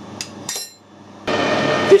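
Two light metallic clinks as steel parts are handled, then from a little over a second in a metal lathe running steadily, with a sharp knock just before the end.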